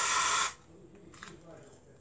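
Lynx Australia aerosol deodorant sprayed under the arm in one short hiss that stops about half a second in.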